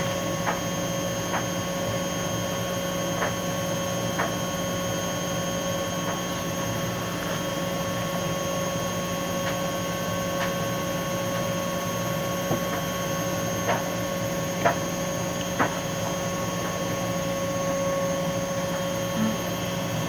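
A small washing machine running with a steady, even hum, with a few faint clicks scattered through it.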